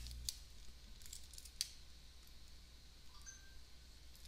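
A few faint, sharp clicks over quiet room tone, from a computer mouse or stylus as the pen annotations are cleared from a slide.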